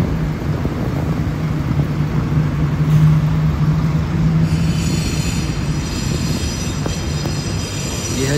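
Steady low hum of a heavy vehicle's engine, with a cluster of high, steady whining tones joining about halfway through.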